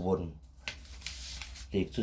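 A man speaking Thai, with a short rustle about a second long in the pause between his words.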